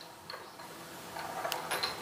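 A few faint, light clicks over low background hiss.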